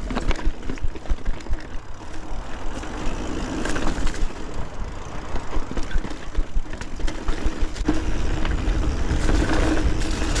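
A mountain bike (a 2021 Santa Cruz 5010) being ridden: wind buffeting the camera microphone in a constant low rumble, with frequent clicks and rattles from the bike over rough ground.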